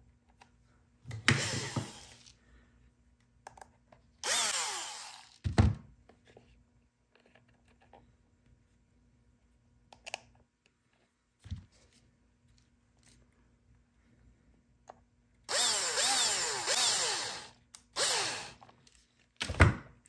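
Cordless drill-driver running in short bursts, its motor pitch sliding up and down as it drives screws into T-nuts. There are short runs about a second in and about four seconds in, and a longer run of two to three seconds starting past the middle. Dull thumps come at about five and a half seconds and just before the end.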